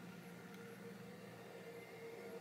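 Near silence: faint room tone with a faint steady hum.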